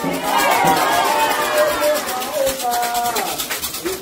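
Candomblé ritual music: several voices singing and calling together over a quick, steady percussion beat, with a metal adjá hand bell rattling.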